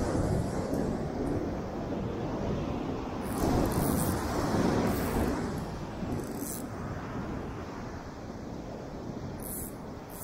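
Wind buffeting the microphone over the rush of surf breaking on the beach, swelling loudest in the middle and easing off towards the end.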